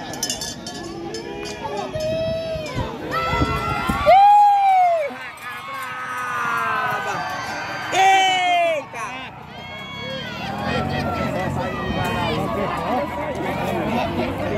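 A crowd of men shouting and calling out over one another as a horse is ridden past at a gallop. Two loud, drawn-out falling shouts stand out, about four and eight seconds in.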